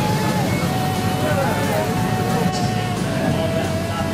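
Classic cars' engines running at low revs as they crawl past at walking pace, with crowd chatter around them.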